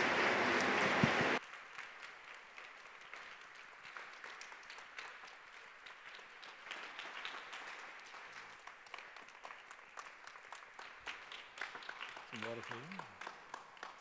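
Audience applauding; the loud applause drops off abruptly about a second and a half in, leaving much fainter scattered claps and clicks. A brief murmur of voice near the end.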